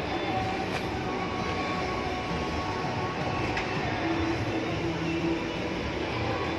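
Steady, echoing background din of a busy shopping mall hall: indistinct crowd noise and activity from the sale floor below.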